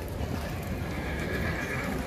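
A horse neighing once, about a second long, starting a little after halfway into the first second, over a steady low rumble.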